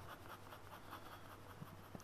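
Pen scratching on paper in quick, faint, repeated strokes as the muzzle of a drawing is shaded in with hatching.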